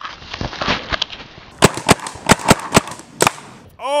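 Paintball markers firing. The first second and a half is a muffled, noisy stretch with duller shots, then comes a string of about seven sharp, loud pops.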